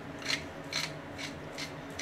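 Hand-turned pepper mill grinding black pepper in short rasping twists, about two a second.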